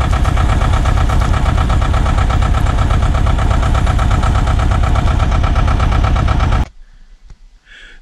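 A vehicle engine idling steadily, close by. It cuts off suddenly a little over a second before the end, leaving near quiet.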